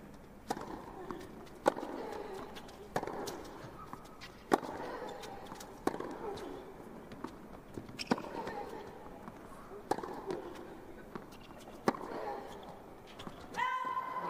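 Tennis rally on a hard court: about eight racket strikes on the ball, a second or two apart, with players grunting on some shots. A pitched shout rises near the end as the match point is won.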